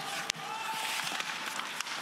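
On-ice sound of an ice hockey game: skates scraping and a few sharp clicks of sticks and puck near the start, over the steady hiss of the arena.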